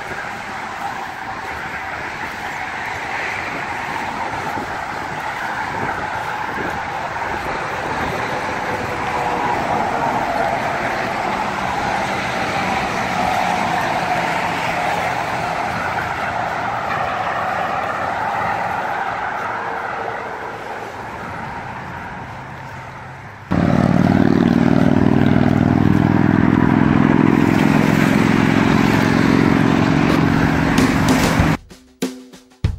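Highway traffic passing close by: a steady rush of tyres and engines that grows louder over the first twenty seconds. About 23 seconds in it changes abruptly to a louder, deeper, steady rumble.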